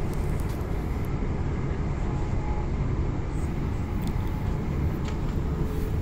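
A moving passenger train heard from inside the carriage: a steady low rumble of wheels running on the rails.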